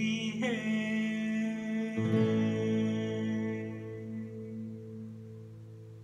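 Acoustic guitar's final chord ringing out and slowly fading at the end of a song, a new chord struck about two seconds in. A male voice holds the last sung word near the start.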